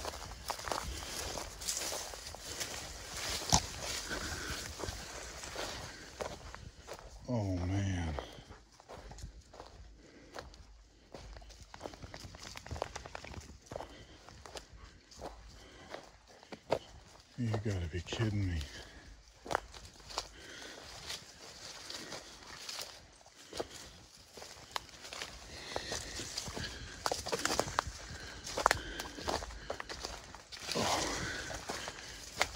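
Footsteps pushing through tall weeds and brush on an overgrown trail, stems and leaves swishing and twigs snapping. Twice a man's voice gives a short sound that falls in pitch.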